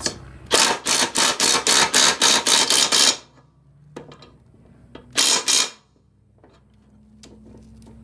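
Bosch cordless impact driver hammering as it tightens a mower blade's centre bolt onto the spindle. It runs in a burst of about two and a half seconds, then a short half-second burst about five seconds in, drawing the bolt down on the bowed washer.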